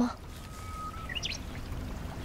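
Quiet outdoor background ambience: a steady soft hiss over a low rumble, with a couple of faint, short, high rising chirps just after a second in.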